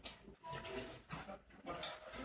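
Indistinct voices of people talking in a crowded room, in short broken snatches with brief lulls between.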